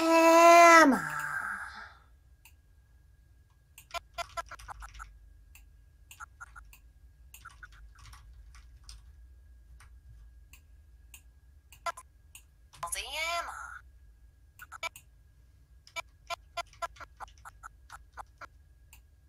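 Computer mouse clicking in scattered runs. A loud held voice-like tone sounds at the start and drops in pitch as it ends, and a shorter rising-and-falling voice sound comes about 13 seconds in.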